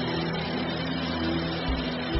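Background music of sustained, held chords, with a low bass note swelling near the end.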